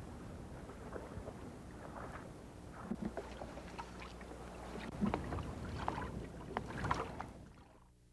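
Outdoor field ambience: a steady low rumble with scattered small knocks and taps, busier and louder in the second half, fading away just before the end.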